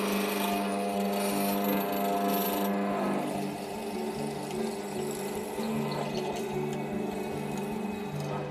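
Hollow-chisel mortiser running as its square chisel is plunged into hardwood to cut a square mortise. The cutting noise is loud for the first two to three seconds and then eases off, leaving the motor humming.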